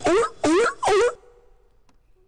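Sea lion bark sound effect played by a looping Scratch program: three short barks about half a second apart, then it stops when the space bar toggles the program's muted variable.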